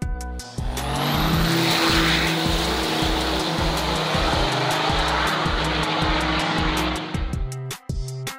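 A Cummins-powered diesel drag truck launching and running at full throttle down the drag strip for about six seconds, with a high whistle rising in pitch about a second in, then fading away. Background music with a steady beat plays underneath.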